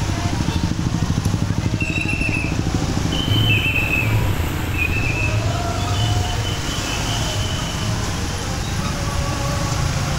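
Motorbike engine running at low speed in slow, jammed street traffic, with other motorbikes and cars close around. A few short high-pitched tones sound in the middle.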